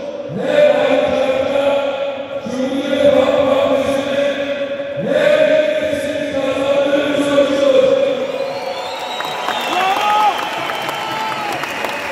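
Large crowd chanting a slogan in unison, each drawn-out phrase starting again about every two and a half seconds. In the last few seconds the chant thins out into scattered shouts.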